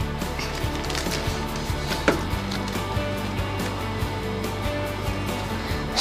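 Soft background music with steady held notes, over light clicks and taps from hands handling a cellophane-wrapped sticker sheet and a small plastic toy.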